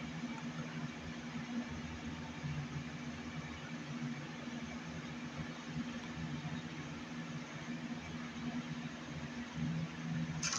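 Steady low hum over an even hiss, unchanging throughout, with no distinct events.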